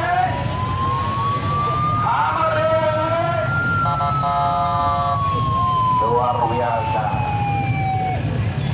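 Police siren wailing in one slow rise and fall, climbing for the first few seconds and then sliding down, over the low running of the escort's motorcycle engines. A short steady horn blast sounds about four seconds in.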